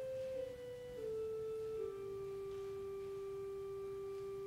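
Church organ playing a slow, soft melody in pure, flute-like tones: a few held notes stepping down in pitch, the last held for about three seconds.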